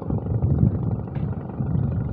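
A low, uneven rumble of wind buffeting the microphone.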